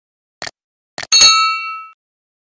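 Animated end-screen sound effects: two short clicks, then a bright, bell-like ding a little after one second that rings on and fades over almost a second.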